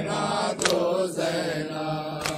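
Men's voices chanting a held note of a Muharram noha lament, with one sharp slap a little over half a second in that keeps the beat of chest-beating (matam).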